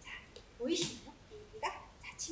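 A woman's soft, brief wordless voice sounds, one about half a second in and a shorter one near the end, in a quiet room.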